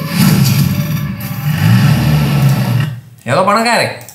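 A man speaking, with a short pause about three seconds in before he speaks again.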